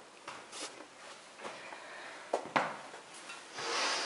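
Footsteps and scuffs on stone stairs in a small echoing space, with a few sharp knocks and a louder rustle near the end.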